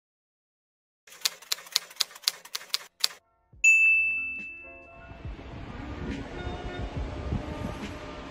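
Typewriter sound effect: a run of about eight quick keystrokes, roughly four a second, then the carriage bell dings once and rings out. Soft background music comes in near the end.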